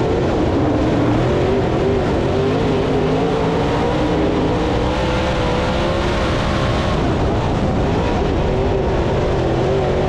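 Dirt Late Model race car's V8 engine running at racing speed, heard from inside the cockpit, with wind and track noise around it. Its pitch climbs for several seconds, drops back, then climbs again near the end as the driver comes off and back onto the throttle around the track.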